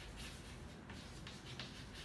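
Chalk writing on a chalkboard: a faint run of short scratching strokes as letters are written.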